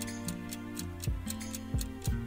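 Countdown timer ticking about four times a second over soft background music with held notes and a low beat.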